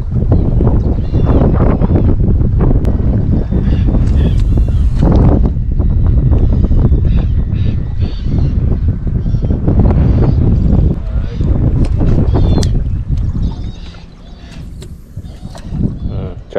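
Wind buffeting the microphone of a body-worn action camera on an open boat, a loud low rumble that eases off sharply near the end.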